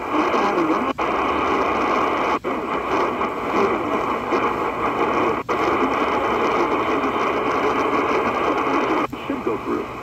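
Qodosen DX-286 portable radio's speaker giving steady AM static while it is tuned up the medium-wave band. The sound cuts out briefly four times as the radio retunes. A station's talk comes in near the end as it settles on a frequency.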